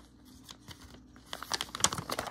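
Thin printed catalogue pages rustling and crinkling as they are flipped through by hand. It is quiet at first, then comes a quick run of rustles in the second half, loudest near the end.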